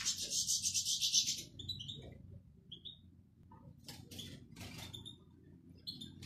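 European goldfinches in an aviary twittering in a dense, rapid high chatter that breaks off about a second and a half in, followed by a few single short chirps and some faint clicks.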